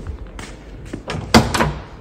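A car door being handled, with a few light clicks and then one loud thump about a second and a half in.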